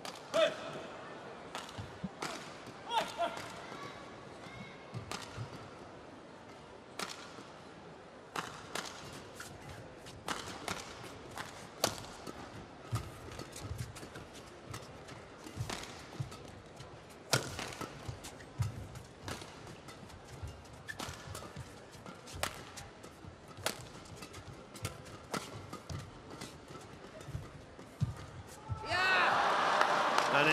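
Badminton rally: rackets strike the shuttlecock as a run of sharp, irregular hits, mixed with footfalls on the court. Near the end the crowd breaks into loud cheering as the point is won.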